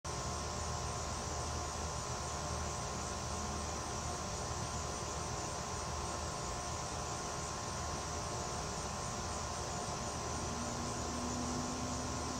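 Steady outdoor night ambience: insects trill continuously in a high, even band over a low, steady hum.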